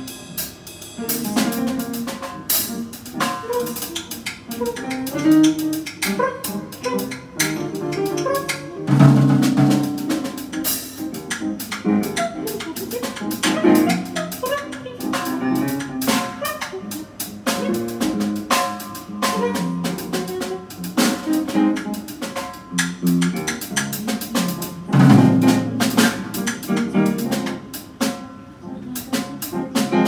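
Free-jazz improvisation on drum kit and piano, the drums struck in dense, irregular hits with no steady beat.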